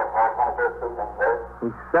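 A voice speaking, the words indistinct, on an old narrow-band radio broadcast recording.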